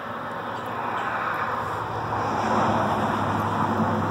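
A car passing on the road, its tyre and engine noise swelling to a peak a little past halfway and then easing off.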